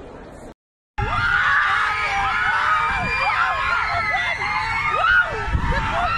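A crowd of fans screaming and shouting, many high voices overlapping, starting suddenly about a second in after a brief silent gap. Before the gap there is only a low, quiet murmur of room noise.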